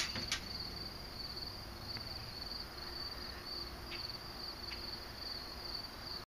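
Crickets chirping in a steady, pulsing high-pitched trill, with two light clicks at the very start.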